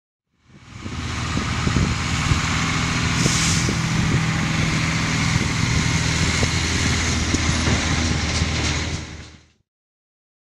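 Truck engine running steadily as the truck drives, with a brief hiss a little after three seconds in. The sound fades in at the start and fades out near the end.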